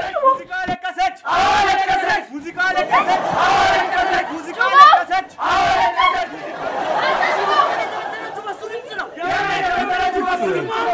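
A crowd of protesters shouting and chanting slogans together, many voices overlapping.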